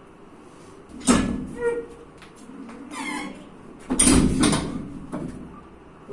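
Heavy iron plates on a loaded axle bar clank and creak as the bar, about 658 kg, is strained a centimetre or two off its stacks, with the lifter's strained grunts. The loudest bursts come about a second in and about four seconds in.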